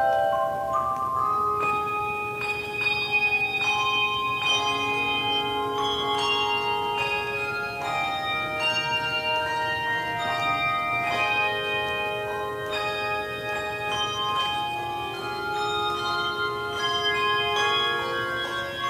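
Instrumental music of struck, ringing notes at several pitches, each sounding for a second or two, moving in a slow melody over chords.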